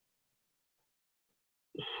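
Near silence, then a short, faint breath near the end as a man is about to speak again.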